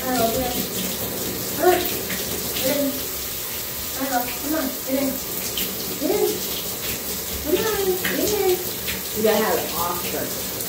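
Tap water running steadily from a bathtub faucet, filling the tub for a dog's bath, with short voice-like sounds on and off over it.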